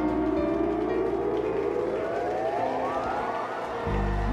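Live rock band music: a held note slides steadily upward in pitch over about three seconds, like a siren, while the bass thins out, and the full band comes back in at the end.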